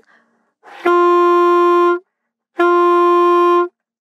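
Alto saxophone playing the second-octave D twice, two steady held notes of the same pitch, each about a second long with a short break between. The notes are blown with faster, higher-pressure air, as the second octave needs.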